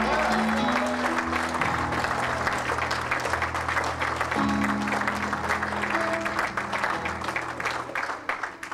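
Audience clapping over instrumental music with held bass notes and chords that change every few seconds.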